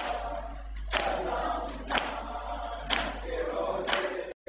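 Men beating their chests in unison (matam), a sharp slap about once a second, with a group of male voices chanting a noha between the strikes.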